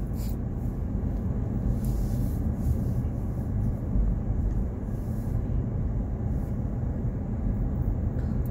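Steady low rumble of a car moving slowly, engine and tyre noise heard from inside the cabin.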